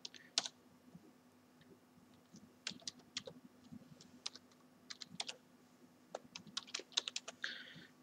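Computer keyboard being typed on: faint, irregular key clicks in short runs with pauses between.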